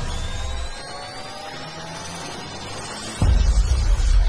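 Cinematic intro music: a cluster of rising tones swells, then a deep bass hit lands a little after three seconds in and carries on as a low rumble.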